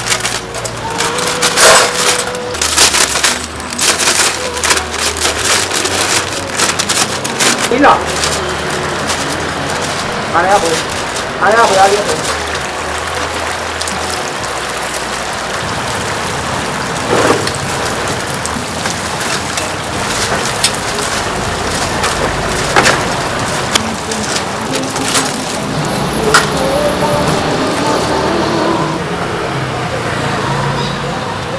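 Hot oil sizzling steadily in a deep fryer of frying chicken pieces, with a rapid clatter of sharp clicks and knocks through the first dozen seconds and a few brief voices.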